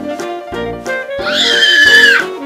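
Upbeat jazzy background music with a regular beat. About a second in, a toddler lets out a loud, high-pitched shriek, held for nearly a second, which is the loudest sound.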